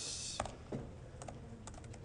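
Computer keyboard typing: scattered key clicks as a command is typed, opening with a brief hiss.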